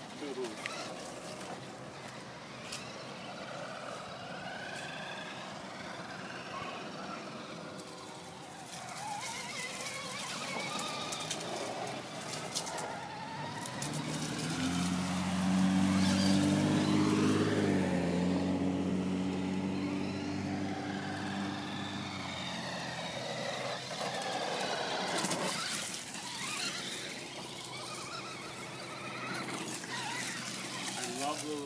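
Traxxas Stampede VXL RC monster truck's brushless electric motor whining, its pitch rising and falling again and again with the throttle. About halfway through, a passing car's engine hum swells and fades, the loudest sound here.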